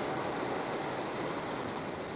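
Steady tyre and wind roar heard inside a car's cabin while cruising at motorway speed.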